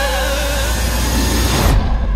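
Cinematic trailer score: held, wavering music notes give way to a rising whoosh that builds to a deep boom, with the upper sound cutting off suddenly near the end.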